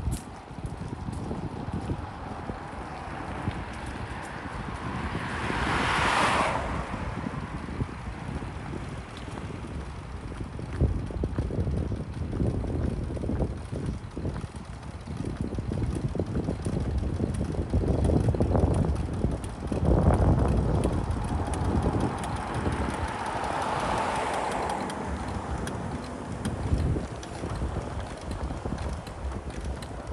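City street ambience with wind buffeting the microphone. A car passes twice, swelling and fading about six seconds in and again around twenty-four seconds.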